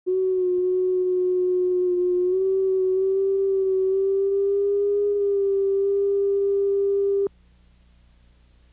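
Steady electronic line-up test tone recorded at the head of a videotape: a single held pitch with a faint higher overtone, wavering slightly upward. It cuts off abruptly about seven seconds in, leaving faint tape hiss.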